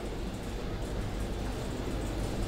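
Steady room tone in a lecture hall: a low hum under an even hiss.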